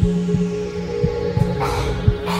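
Suspense soundtrack: a steady low drone under a heartbeat-like throbbing pulse, about three beats a second, with a swishing whoosh effect coming in near the end.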